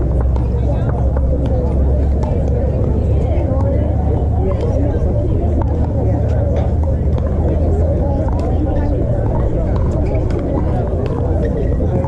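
Pickleball paddles striking the hard plastic ball in sharp, scattered pops from the courts, over a steady low rumble and the indistinct voices of players.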